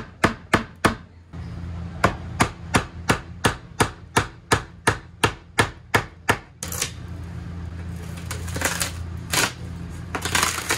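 Steady hammer blows on a steel pry bar, about three a second, driving it in behind wall paneling. The blows stop after about six and a half seconds and give way to crackling and tearing as the panel is pried off the studs.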